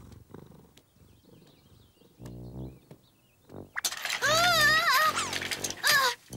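Cartoon cat purring: a faint low pulsing at first, stronger from about two seconds in. From about four seconds in comes a loud, long meow that wavers up and down in pitch over the purr.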